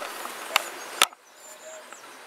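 Two sharp clicks about half a second apart, the second much the louder, then a faint, quieter background.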